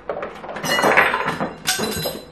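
Lemons poured from a cereal box clattering into a bowl: a jumble of knocks and clinks, with a louder clatter near the end.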